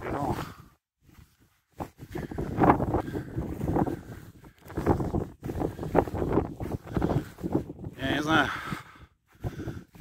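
A man talking outdoors, with wind buffeting the microphone as a low rumble under his voice.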